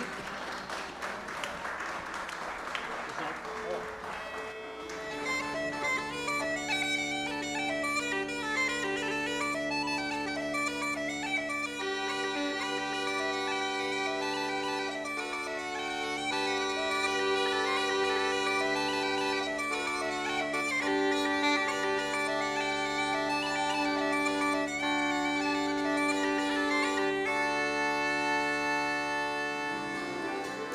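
Applause for the first few seconds, then bagpipes playing a tune over steady drones.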